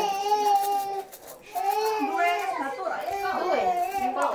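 A young child's high-pitched, wavering cry or whine without words: one long held cry in the first second, then more after a short pause.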